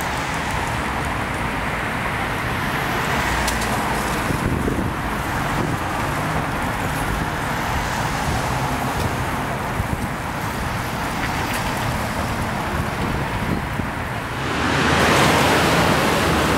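Steady noise of road traffic, which grows louder and brighter near the end.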